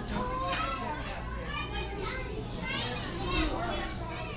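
Many children's voices chattering and calling out at once, a busy babble of young visitors, over a low steady hum.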